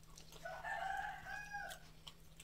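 A rooster crowing once, a single drawn-out call of about a second and a half that begins about half a second in and tails off at the end.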